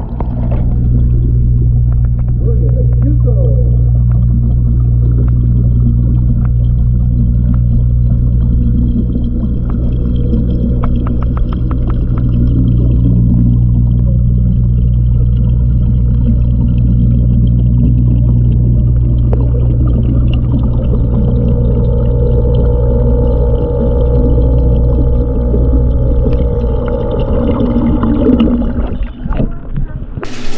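Steady low electric hum of a small submersible fountain pump, heard with the camera underwater in the pond, with a run of faint clicks about ten seconds in.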